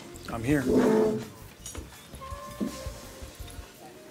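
A short, loud vocal sound, like an untranscribed greeting or exclamation, about half a second in, over background music.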